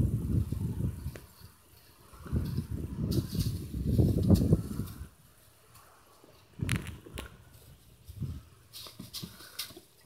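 Gusts of wind on the microphone, a low rumble that comes twice in the first half, followed by a few short, sharp crackles from the plastic training flag being shaken.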